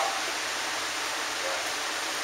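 Steady hiss of background noise, even and unchanging, with no other distinct sound.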